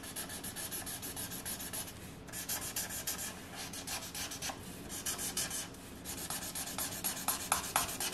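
Marker tip scribbling rapidly back and forth on paper, colouring in a shape with quick, even strokes. It pauses briefly about two seconds in and again near six seconds, and the strokes turn fewer and sharper near the end.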